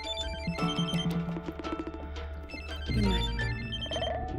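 Mobile phone ringing with a melodic ringtone, a tune of short repeating notes, over a low steady hum.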